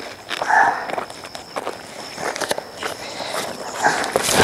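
Footsteps crunching on a gravel road, an irregular run of steps.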